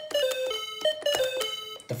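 AR-7778 musical calculator playing a quick run of electronic beep notes as its number keys are pressed. Each tone starts with a key click, and the pitch steps up and down from note to note.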